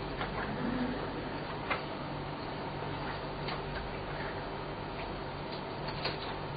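A steady low hum with a few scattered, irregular light clicks and ticks, the clearest about two seconds in.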